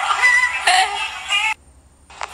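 A high, artificial-sounding voice in a sing-song delivery, cut off abruptly about a second and a half in, followed by a short quiet gap.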